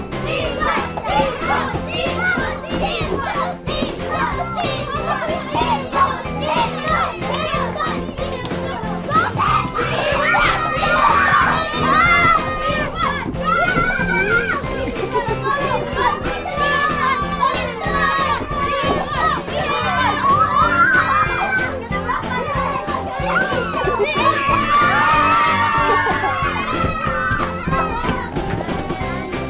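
Group of children cheering and calling out excitedly over background music with a steady beat, the shouting swelling louder twice, near the middle and again near the end.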